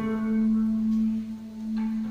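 Electric guitar, a Les Paul-style single-cutaway, letting a single held note ring on and fade. A quieter higher note is picked near the end.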